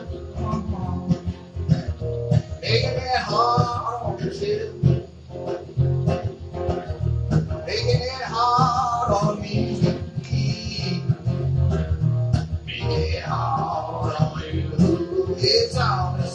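Acoustic guitars strumming a song's instrumental introduction, with a sung or played melody line rising up three times, about five seconds apart.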